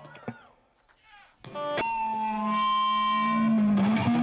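Distorted electric guitar through effects: a chord rings out and fades, then after a brief near-silence with a few clicks, long sustained notes start about a second and a half in and hold steady.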